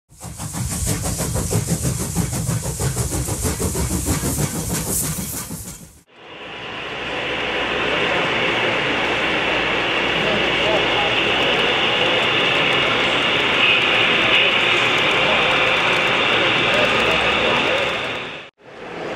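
For about six seconds, a rhythmic sound with a strong low beat and rapid clicks, cutting off sharply. Then steady crowd chatter in a large hall, with an HO-scale model train running on the layout.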